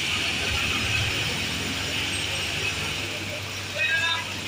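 Asphalt paver's engine running steadily during road paving, a constant mechanical drone, with people's voices near the end.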